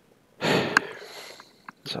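A man sniffs sharply through his nose close to a headset microphone about half a second in. There is a small click within it, and it fades off over the following second.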